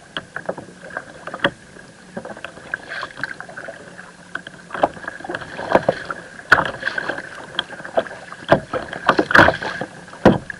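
Water splashing and slapping against a kayak hull on choppy sea as it is paddled: irregular sharp splashes that come thicker and louder in the second half.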